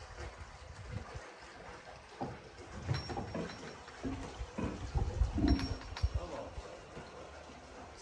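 Water draining out of a lock chamber through partly opened wooden lock gates: a steady rush of water, with irregular low thumps and knocks in the middle.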